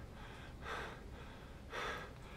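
A man breathing heavily: two quiet, gasping breaths about a second apart, over a faint low hum.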